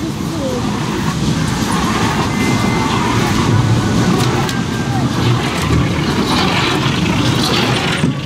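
Children's caterpillar kiddie ride turning, its cars rolling past close by with a steady low rumble, and people's voices around it.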